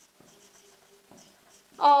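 Dry-erase marker writing on a whiteboard: faint scratches and squeaks as letters are drawn. A woman's voice starts near the end.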